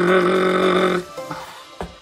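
A man's vocal imitation of Perry the Platypus's growl: one steady, held, pitched growl lasting about a second, followed by softer short sounds.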